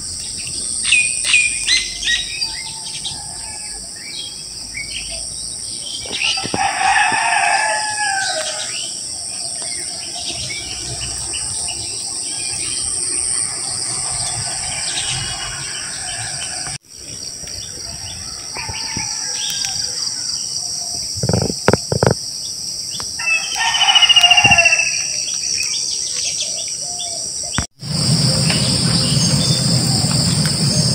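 A steady high insect chorus, crickets or similar, with scattered bird chirps over it; a rooster crows twice, about seven seconds in and again about twenty-four seconds in. The sound cuts out for an instant twice.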